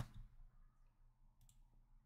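Near silence, with a couple of faint, short clicks about one and a half seconds in.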